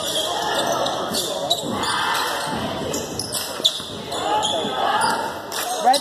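Basketball being dribbled on a hardwood gym floor, with voices chattering and echoing around a large gym.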